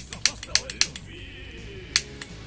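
A pocket lighter flicked repeatedly, sharp clicks about four times in quick succession and once more near the end, failing to light; the lighter is given up for matches.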